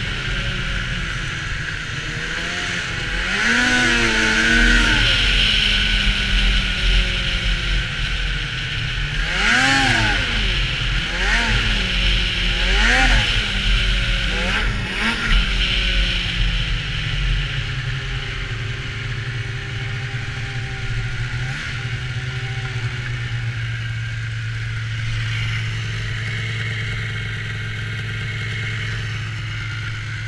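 Polaris SKS 700 snowmobile's two-stroke twin engine revving in rising-and-falling swells: one about four seconds in, then a quick run of four between about nine and fifteen seconds. It then settles to a steady, lower running tone.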